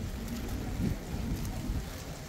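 Wind rumbling on the microphone, a steady low buffeting over faint outdoor street ambience.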